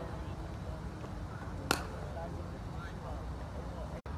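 One sharp crack of a cricket ball struck by a bat, a little under two seconds in, over steady background noise and faint distant voices.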